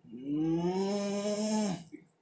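A man's long, drawn-out thinking hum before answering a question: one held note, rising slightly at the start and falling away at the end.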